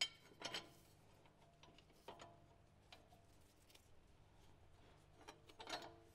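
A few faint metal clicks and clinks as steel caster correction plates are handled and test-fitted against the axle mount: a sharp click at the start, more about half a second and two seconds in and near the end, with near silence between.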